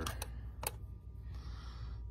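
A few light clicks and taps from the metal model locomotive chassis being handled, most of them in the first second, over a steady low hum.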